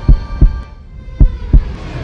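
Heartbeat sound effect: two deep double thumps, the second pair about a second after the first, over a faint hum.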